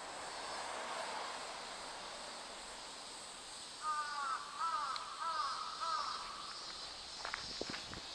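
A crow cawing, a run of about five caws in quick succession in the middle, over a steady high hiss of outdoor background.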